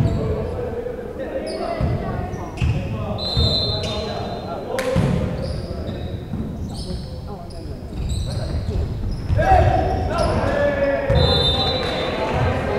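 Volleyball rally sounds echoing in a large gym: the ball struck and bouncing in sharp knocks, brief high sneaker squeaks on the hardwood floor, and players' shouted calls.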